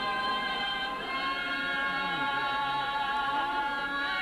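Choir singing unaccompanied, holding long sustained chords with lower voices moving beneath.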